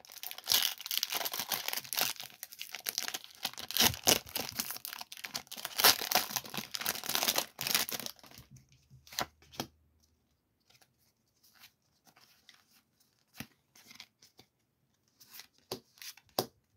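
Foil Pokémon booster pack wrapper being torn open and crinkled for about eight seconds, then only a few light taps and rustles as the card stack is handled.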